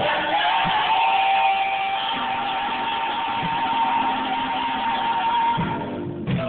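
Live gospel music from a youth vocal group with band accompaniment, a single long high note held over the band.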